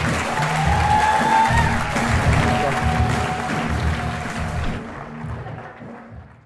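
Audience applauding and cheering with music playing underneath, the whole mix fading out over the last second or so.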